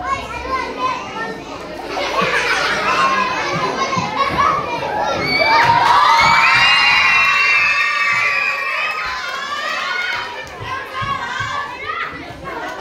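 A crowd of children shouting and cheering. It swells about two seconds in, peaks in the middle with long, loud, high-pitched shouts held for a few seconds, then dies down.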